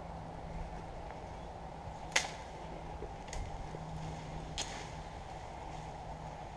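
Three sharp snaps or cracks, a second or so apart, the first the loudest, over a steady low hum of outdoor background noise.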